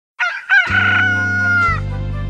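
A rooster crowing: a short rising call, then a long held note that falls away near the end. Low notes of a children's song's accompaniment start under it about half a second in.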